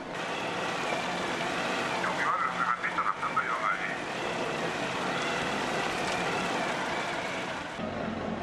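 Steady heavy rain and sea noise on the deck of a mackerel purse seiner while the net is hauled in, with crew voices shouting about two to four seconds in.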